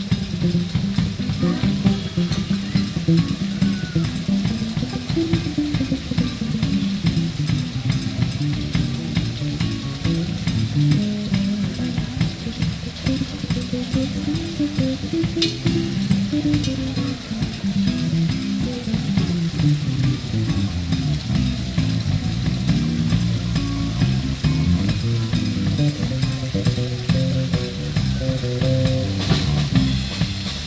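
Live band playing: an electric bass line moving from note to note, with a drum kit's continuous cymbal hiss and electric guitar over it. There is one sharp hit about halfway through.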